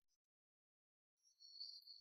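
Near silence, with a faint steady high tone coming in a little past the middle.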